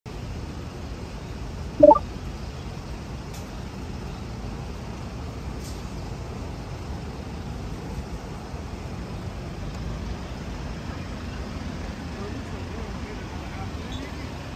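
Steady city street noise with a low traffic rumble. About two seconds in comes one brief, loud pitched call.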